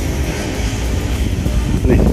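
Outdoor riverside ambience at night: a steady low rumble with distant voices and music in the background.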